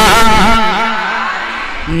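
A man singing a naat into a microphone, holding a long note with a slowly wavering pitch that grows quieter toward the end.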